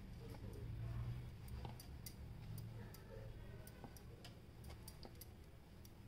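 Faint ticks from a knife tip pressing through a rolled sheet of shankarpali dough onto the plate beneath, cutting it into small pieces, about two clicks a second. A low steady hum runs underneath.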